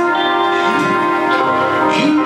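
Live band playing an instrumental passage of sustained notes, with a sliding note about a third of the way through and another near the end.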